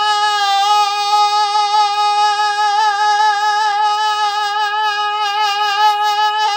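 A man's voice holding one long, high sung note at a steady pitch with a slight waver, in a sharp, chest-voice-like tone made by the cricoarytenoid lateralis muscle. The tone widens and loses its sharpness, then sharpens again, twice over.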